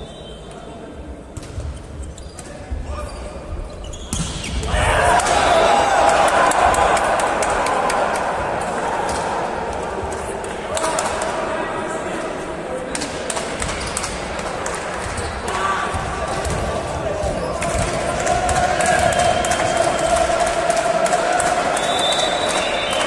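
Indoor volleyball rally: sharp thuds of the ball being struck, under shouting from spectators and players that echoes in a large sports hall. The shouting swells about four seconds in and stays loud.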